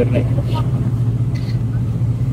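Loud, steady low drone of an airliner's engines heard from inside the passenger cabin, so loud that the crew hand out cotton for passengers' ears.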